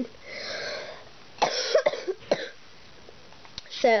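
A person with a cold coughing: a breathy sound first, then a short run of coughs starting about a second and a half in.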